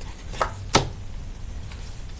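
Two short, sharp taps about a third of a second apart, the second louder, from hands handling a deck of tarot cards.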